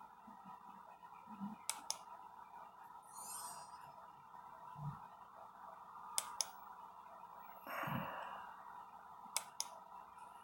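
Quiet room with a faint steady hum and three pairs of sharp computer-mouse clicks, each pair about a fifth of a second apart. A soft breath or rustle comes shortly before the last pair.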